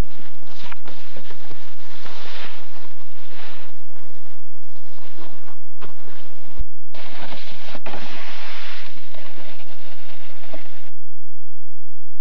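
Snowboard sliding and scraping over packed snow, a steady gritty crunch broken by many short scrapes. About six and a half seconds in it cuts off at a sharp click and a short gap, then resumes and stops near the end.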